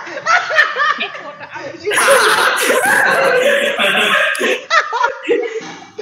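Two young men laughing hard, loudest and most sustained from about two seconds in until past the middle, with bits of voice mixed in.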